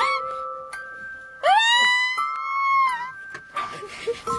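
A long, high-pitched excited squeal that rises in about a second and a half into the stretch, holds, then drops away, over steady held notes of background music.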